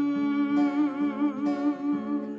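A man's voice holds one long sung note with vibrato over strummed acoustic guitar.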